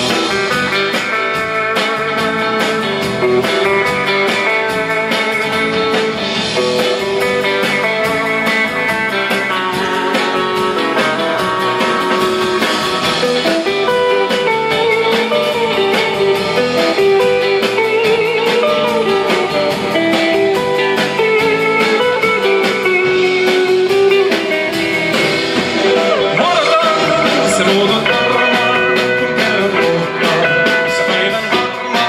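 Live band playing amplified rautalanka-style music, with electric guitars over a drum kit.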